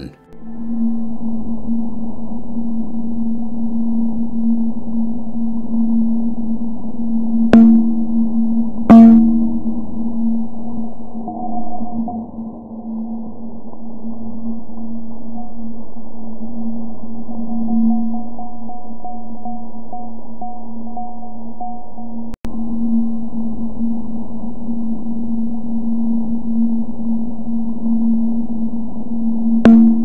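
Sonification of the BepiColombo spacecraft's Italian Spring Accelerometer recording from its Venus flyby, shifted down into the range the ear can hear: a steady low hum with two sharp clicks about eight and nine seconds in, and faint higher tones through the middle. It renders the spacecraft's changes in acceleration from Venus's gravity, rapid temperature changes and reaction-wheel movements.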